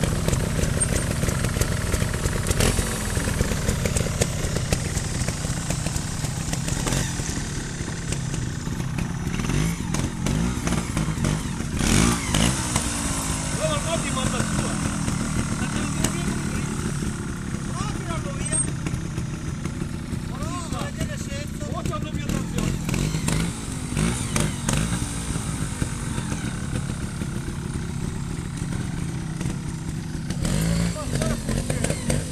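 Trials motorcycle engine idling, with several short revs rising and falling in pitch and one louder burst of throttle about twelve seconds in.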